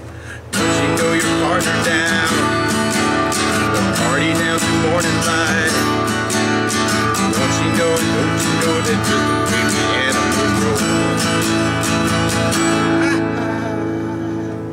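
Acoustic guitar strummed with a pick in a fast, steady rhythm, playing through a song's chord changes. The strumming starts about half a second in, and near the end a last chord is left ringing.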